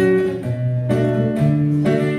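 Guitar picking a short melodic phrase, a new note about every half second over held bass notes.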